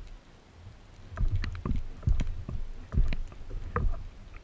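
Sea water sloshing and slapping around a speargun-mounted camera riding at the surface, heard as irregular low thumps with sharp clicks and splashes.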